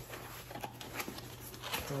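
Small cardboard box being handled to open it: light rustling and scraping with a few faint clicks.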